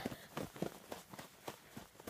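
A small child's boots crunching through deep snow at a run, quick steps about three a second.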